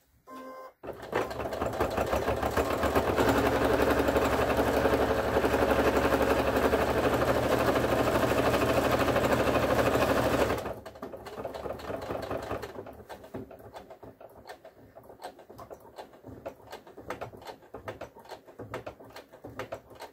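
Computerized sewing machine top-stitching through layers of denim: the motor speeds up over the first couple of seconds, runs steadily for about eight seconds, then stops suddenly. After that comes a run of lighter, irregular clicking as the work goes on.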